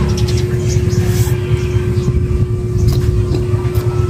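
A steady low rumble with a constant hum runs throughout, with a few short clicks over it as a piece of green mango is eaten and chewed.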